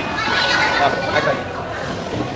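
Several people's voices in a busy mix, talking over one another.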